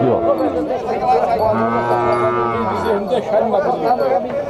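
A cow moos once, one call of about a second and a half that rises slightly in pitch and then falls, with people's voices around it.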